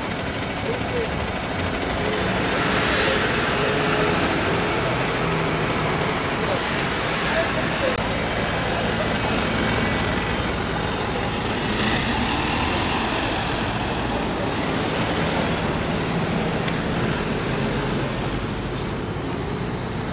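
Wright StreetLite DF single-deck diesel bus pulling away and driving past, its engine running under load. A short, sharp hiss of air comes about six and a half seconds in.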